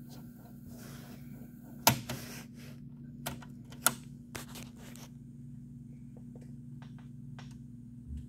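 Transport buttons on a Technics RS-D180W double cassette deck being pressed: a loud mechanical click about two seconds in, sharper clicks a little later, then a few faint ticks, over a low steady hum.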